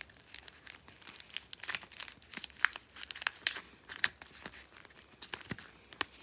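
Clear plastic photocard sleeves and a plastic card holder crinkling and rustling in the hands as cards are slid in and out: a rapid, irregular run of short crackles.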